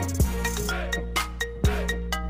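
Hip-hop remix of the iPhone ringtone playing as music. A steady beat with deep sustained bass and drum hits about twice a second.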